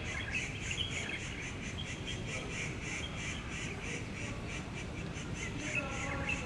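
Animal calls outdoors, repeating evenly about three times a second, over a steady low background rumble.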